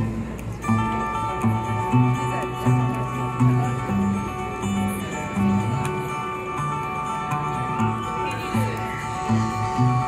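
Two amplified acoustic guitars playing an instrumental passage together, with a rhythmic line of low notes under held higher tones.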